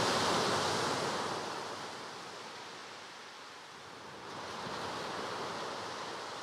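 Ocean surf: a steady wash of waves that fades down, then swells again about four seconds in.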